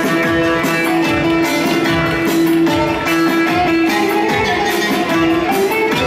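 Live Turkish folk dance music, loud and amplified: a plucked string instrument plays a melody over a held drone note, with a steady drum beat.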